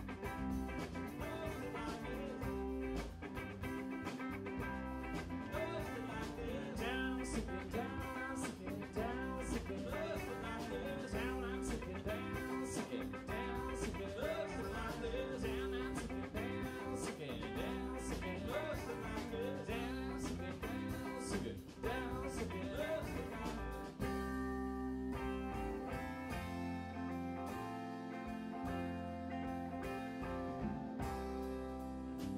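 Live rock band playing an instrumental passage: electric guitar with bending, wavering notes over bass guitar and a drum kit with cymbals. About twenty-four seconds in, the playing changes to held, ringing chords.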